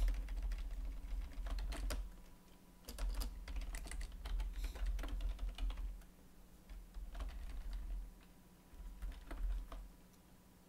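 Typing on a computer keyboard in bursts of quick keystrokes, with short pauses about two and a half, six and eight and a half seconds in.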